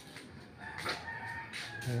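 A rooster crowing faintly: one long held call starting a little under a second in and lasting about a second.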